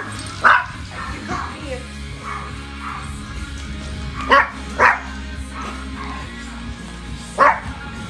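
A small dog barking four times in short sharp barks: once about half a second in, twice in quick succession a little past the middle, and once near the end, over background music.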